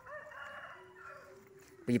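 A rooster crowing: one long, drawn-out crow, fainter than the nearby voice.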